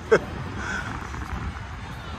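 Outdoor urban background noise: a steady low rumble, after a man's last few words just at the start.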